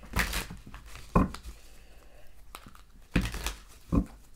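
A Herbal Tarot deck shuffled by hand: cards dropped from one hand into the other in about five quick, irregularly spaced rustling bursts.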